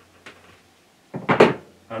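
A faint click, then a short clatter of a metal part being set down on a workbench a little over a second in.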